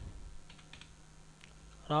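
Computer keyboard being typed on: a handful of faint, separate keystrokes, about one word's worth of letters.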